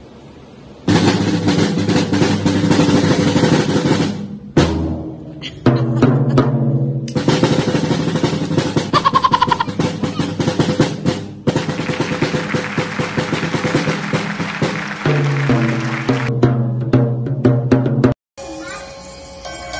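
Fast, busy drumming on an acoustic drum kit's toms and snare, close to a roll in places. It starts about a second in and breaks off briefly a few times.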